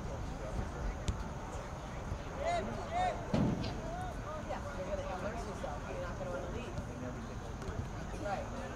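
Distant shouts and calls from players and onlookers at an outdoor soccer game, over a steady low rumble. There is a sharp click about a second in and a thud, typical of a ball being kicked, about three and a half seconds in.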